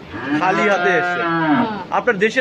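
A cow mooing once: one long call of about a second and a half, rising slightly in pitch and then falling away.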